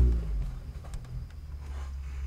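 Low rumble of an idling vehicle engine. It is louder at first and settles into a steady drone within about half a second.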